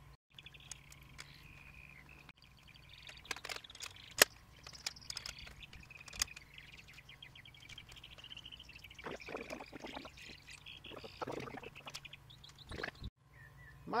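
Birds singing in the background, with a few sharp knocks and some handling clatter as the tiller's handlebar is lifted and fitted; the sharpest knock comes about four seconds in.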